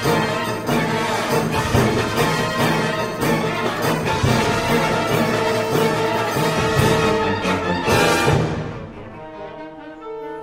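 Full concert band playing loudly, brass over regular percussion strikes. The loud passage breaks off about eight and a half seconds in and dies away, leaving a quieter held chord near the end.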